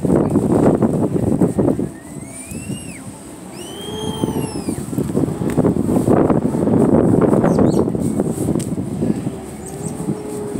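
Loud rustling and buffeting on the phone's microphone as it is carried against a jacket, in two long spells. Between them come two short rising-then-falling whistle-like cries.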